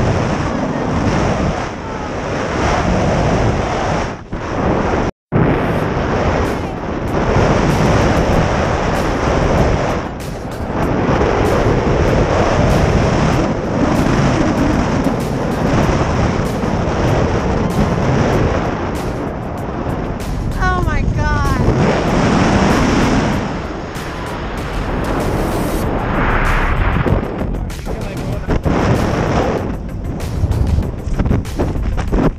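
Loud freefall wind rushing over the camera microphone during a tandem skydive, with music mixed over it. The sound cuts out briefly about five seconds in.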